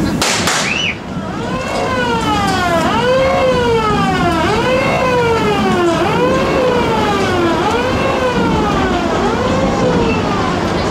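A fire-engine siren wailing, its pitch sweeping up and down about once every second and a half, played as a sound effect for a firefighting scene. A few sharp clicks come in the first second.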